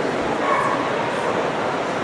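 A dog barking and yipping, with one louder call about half a second in, over the steady murmur of a large indoor crowd.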